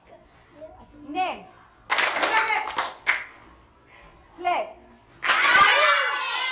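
A group of schoolchildren answering short spoken commands in chorus. They clap together and shout their names all at once, in two loud bursts about three seconds apart.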